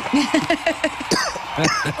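A man laughing in a quick run of short voiced bursts, with a breathy, cough-like burst about a second in.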